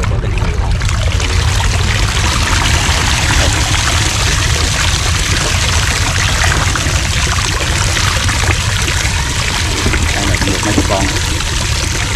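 Water pouring and splashing out of a 20-litre plastic water-jug fish trap as it is lifted from the water and drains through its funnel openings.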